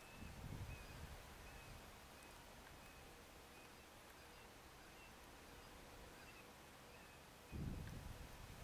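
Near silence in open country, with faint short high chirps about once a second and brief low rumbles just after the start and again near the end.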